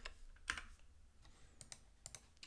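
A few faint, separate keystrokes on a computer keyboard, spaced irregularly, as a missing closing single quote is typed into a line of code.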